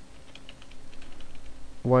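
Computer keyboard being typed on: a quick run of light keystrokes in the first second, over a faint steady hum.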